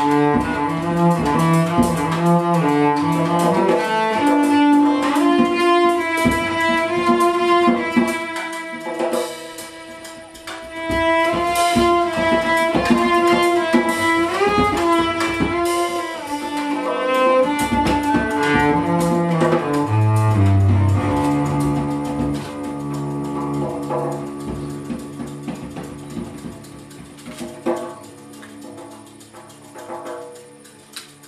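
Improvised live music led by a bowed cello playing long held notes that step and slide in pitch, with scattered light taps throughout. It quietens over the last several seconds.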